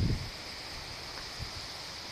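Wind blowing steadily, with a low rumble on the phone's microphone.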